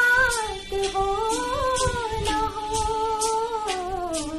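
A woman singing a Hindi film-style song, drawing out long notes that glide slowly up and down, over a backing track with a soft beat about twice a second.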